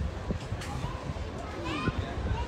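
Voices of people in an outdoor crowd, with a child's high voice calling out near the end, over a low steady rumble.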